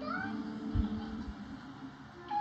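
A cartoon baby's voice cooing: a short, rising, meow-like sound over soft background music, with two low thumps about a second in.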